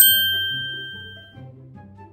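Smartphone message-notification chime: a single bright ding at the start that rings out and fades over about a second and a half, signalling an incoming text.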